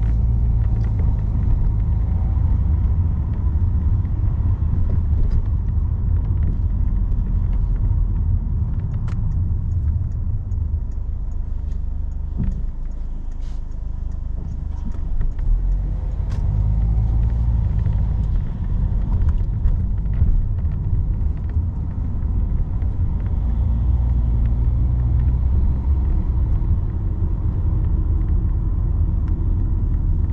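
Car driving slowly through city streets, heard from inside the cabin: a steady low engine and road rumble that eases for a few seconds about halfway through, then picks up again.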